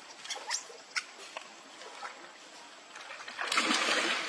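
Water splashing as long-tailed macaques bathe in a shallow pool: a few small splashes and drips, then a larger splash lasting about half a second near the end as one ducks under.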